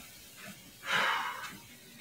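A woman's single breathy exhale about a second in, from the exertion of brisk walking.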